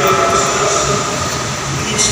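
Many voices singing or chanting together in a large, echoing church, holding long steady notes with no break.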